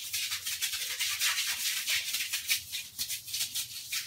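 Stiff brush scrubbing a tiled bathroom floor in quick, even back-and-forth strokes, about three to four a second.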